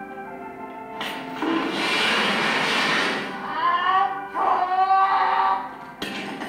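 Film soundtrack played back over speakers in a hall: a held chord gives way about a second in to a loud rushing noise, followed near the end by high, wavering tones.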